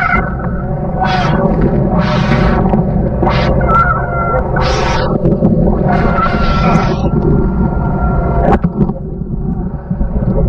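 Men shouting commands repeatedly, about five loud drawn-out calls, over a steady rush of wind, spray and water on the deck of a fast-moving semi-submersible boat. A few sharp knocks come near the end.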